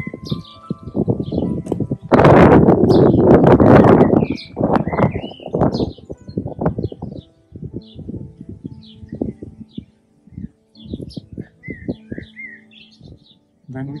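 Small birds chirping over and over over faint, steady background music. A loud rushing noise lasts about two seconds starting two seconds in, and short low rumbling thumps come and go throughout.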